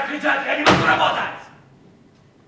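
A man's raised voice, cut across about two-thirds of a second in by a single loud slam that rings out briefly in the hall.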